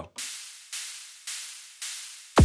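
Roland TR-6S drum machine playing a hi-hat on every beat as a metronome pattern: four even hits, about two a second, each a bright hiss that fades away.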